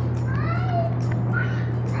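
Steady low hum of a wind-tube exhibit's blower fan pushing air up a clear acrylic tube. Faint high children's voices call out twice in the background.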